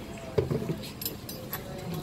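A few light metallic clicks and clinks of a golf cart key and lock being handled.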